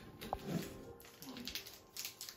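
Soft handling of a wooden magic lantern slide as it is changed, with a few faint clicks. There is also a brief short low sound about half a second in.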